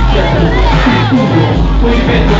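Live hip-hop concert music, a backing track with a heavy bass beat, loud through a phone's microphone, with crowd voices shouting over it.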